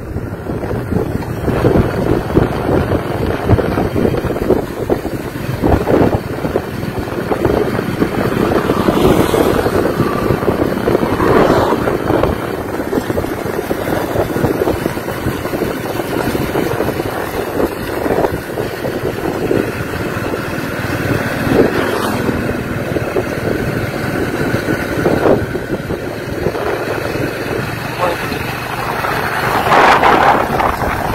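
Wind rushing over the microphone and motorcycle engine noise while riding alongside a motorcycle on the move, a loud, steady rough rush.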